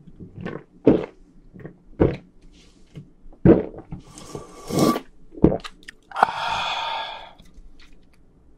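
A person gulping beer straight from a can, a quick run of separate swallows, then a long breathy exhale a little after six seconds in.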